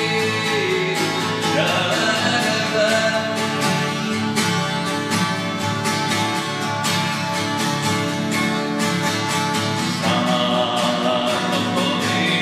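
Steel-string acoustic guitar strummed in a steady rhythm of chords, with a man's singing voice coming in near the start and again near the end.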